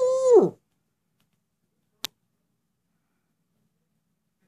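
A young female Eurasian eagle-owl ends a greeting call, the kind she makes on meeting her owner after an absence. The call rises and then drops steeply in pitch, cutting off about half a second in. A single sharp click comes about two seconds in.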